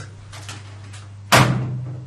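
A single sharp slap of a hand on a desk about one and a half seconds in, over a steady low hum.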